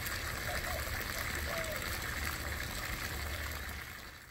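Water splashing and trickling steadily in a garden birdbath, with a low rumble underneath.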